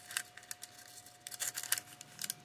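Parchment paper crinkling as it is handled and pressed inside a cardboard toilet-paper tube: scattered short crackles, a cluster a little after the start and a denser run past the middle.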